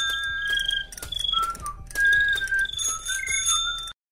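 Short sound-effect interlude: a string of high, clear whistling tones, each held briefly and stepping up and down in pitch, with small ticks over a low steady hum.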